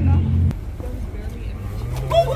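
A motor vehicle's low, steady engine hum on the street, cutting off suddenly about half a second in. Quieter street noise with faint voices follows.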